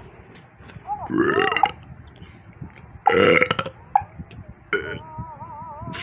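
Cartoon soundtrack played through laptop speakers: two loud, rough vocal noises, about a second and three seconds in, then a wavering, warbling tone near the end.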